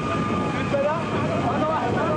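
A crowd of men talking and calling out at once, many voices overlapping over a steady outdoor rumble.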